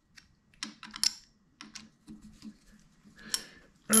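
Light metallic clicks and taps of small parts being handled as a little brass bushing adapter is worked out of a Wohlhaupter boring head: a scattering of irregular clicks, the sharpest about a second in and a little after three seconds.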